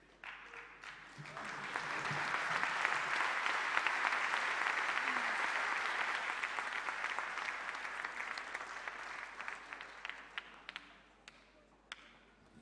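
Audience applauding. The clapping starts right away, swells to full within about two seconds, then slowly dies away, ending in a few scattered claps.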